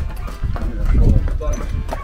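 Hooves of two draft horses clopping on a concrete floor as they are led at a walk, with a low rumble that peaks about a second in.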